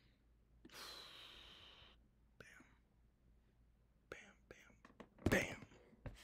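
A man's breathy whispering and exhaling close to the microphone, with a few short clicks around four seconds in and a louder brief sound about five seconds in.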